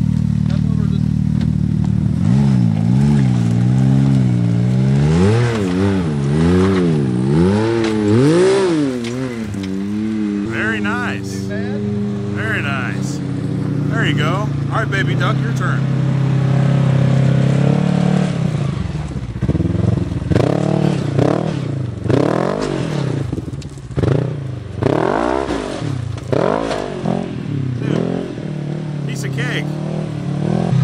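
Side-by-side UTV engine revving in repeated surges while rock crawling, then running more steadily for a few seconds, then a run of quick throttle blips as the machine works up the rock ledge.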